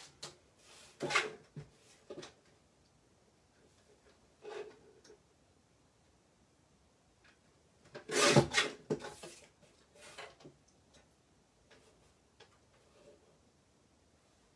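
Card being trimmed on a paper guillotine, with the card handled between cuts: scattered rustles and taps, and the loudest scraping cut lasting about a second, some eight seconds in.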